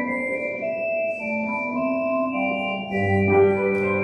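Organ playing slow, held chords; about three seconds in, deep bass notes come in and the music grows louder.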